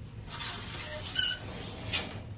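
Shower curtain being pulled aside: a soft swish of fabric and the rings scraping along the rod. A short, high-pitched scrape comes about a second in, and a click near the end.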